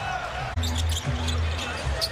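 Basketball bouncing on a hardwood court amid arena noise. About half a second in, the sound changes abruptly and arena music with a steady low bass comes in.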